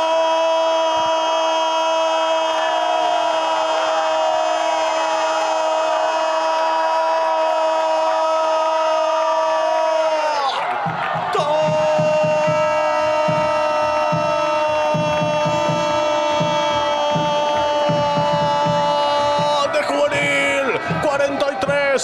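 Football commentator's drawn-out goal cry, a long held "goool" of about ten seconds that sags in pitch as his breath runs out, then a second held cry of about nine seconds. Music with a steady beat plays under the second cry.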